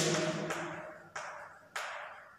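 Chalk tapping against a blackboard while writing: three sharp taps about half a second apart, each ringing out briefly in the room.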